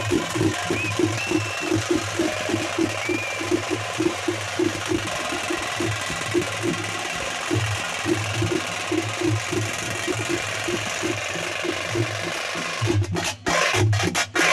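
Procession drums beating a fast, even rhythm, about three beats a second, over the steady noise of a large outdoor crowd.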